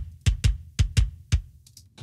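Recorded kick drum played back on its own, unprocessed with no pitch or transient shaping: about six hits in quick, uneven succession, then a few fainter ones, sounding polite rather than punchy.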